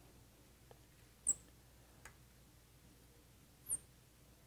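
Two short, high squeaks of a marker drawn on a glass lightboard, about a second in and again near the end, with a faint tick between them over quiet room tone.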